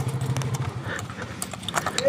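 Footsteps on a concrete and dirt path: scattered, irregular taps and scuffs.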